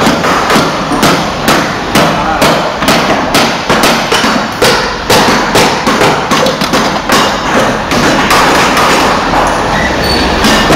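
Hammer strikes in quick succession, about two a second and unevenly spaced: porcelain clay being hammer-pressed into a mould by hand.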